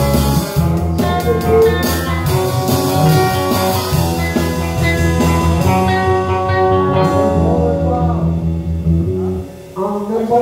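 Small live band jamming a blues-rock groove: bass, drum kit, electric guitar and a wind lead playing together. The cymbals drop out about seven seconds in and the band stops just before the end.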